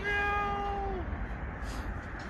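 An orange tabby cat gives one meow about a second long, holding its pitch and then dropping at the end.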